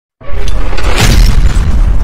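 Cinematic logo-intro sound effect: a loud, deep boom with a rushing burst, set in music, starting suddenly just after the opening silence.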